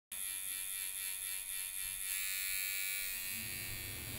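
A steady electric buzz with many overtones, starting abruptly and turning a little brighter about halfway through.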